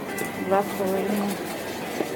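Speech: a brief exchange about kefir in a shop, over a faint steady hum and background noise.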